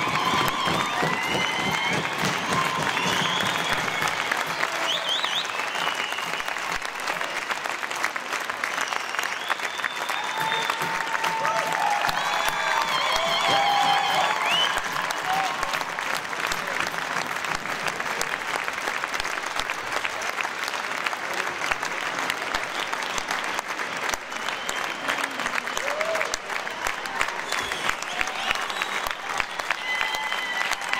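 Audience applauding steadily, with scattered voices calling out over the clapping.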